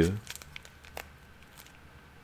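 Faint crinkling and a few light clicks from a comic book's plastic sleeve being handled, with one sharper click about a second in.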